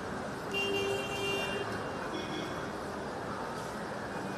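Outdoor street and crowd noise with a vehicle horn-like tone sounding for about a second, starting half a second in, and briefly again about two seconds in.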